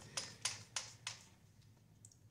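About four light plastic clicks and taps in the first second or so from handling a line spooler, a filler spool of line and a spinning reel.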